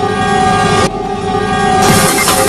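A loud, sustained horn-like blast, a dramatic sound effect over a title card. It holds one steady chord-like pitch, its upper edge falls away about a second in, and a loud hiss swells in near the end.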